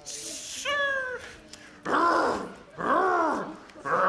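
Vocal imitation of excavator hydraulics: a short hiss, then a falling whine about a second in, and two whines that rise and fall in pitch, one around the middle and one near the end, as the digger arm is raised.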